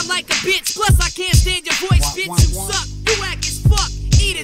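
Hip hop track: a rapper's voice over a beat with drum hits and a held low bass note in the second half.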